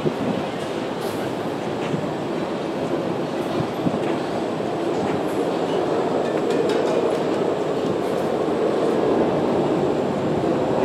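Steady city street noise: a continuous wash of traffic and passers-by on a busy pedestrian street, growing a little louder in the second half.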